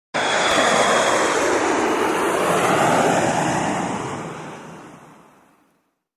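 An intro sound effect: a rushing noise like wind or surf that cuts in suddenly, holds steady for about three seconds, then fades away over the last two seconds.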